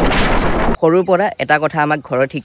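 An explosion: one loud blast of noise that cuts off abruptly under a second in, followed by a man speaking.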